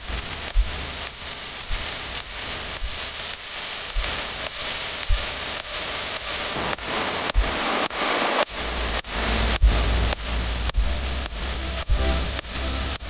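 F-35A's F135 jet engine running on the flight line: a loud, steady rushing hiss full of sharp crackles, with a deep rumble joining about eight and a half seconds in.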